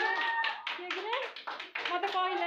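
A small group of people clapping in a quick steady rhythm, about five claps a second, with women's voices calling out over it.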